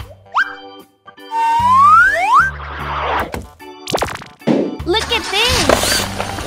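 Cartoon sound effects over children's background music: a long rising whistle-like glide about a second and a half in, a sudden hit around four seconds, then crashing noise building near the end as an animated drill truck breaks through a brick wall.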